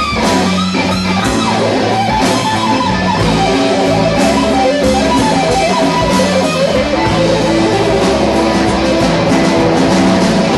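Live blues-rock band playing, with guitar out in front over bass; several notes bend in pitch in the first few seconds.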